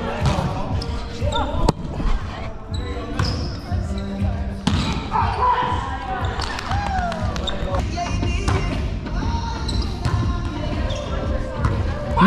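Players' voices chattering across a gym, with a few sharp single slaps of a volleyball hitting the hardwood floor or a player's hands, the clearest near 2 and 5 seconds in.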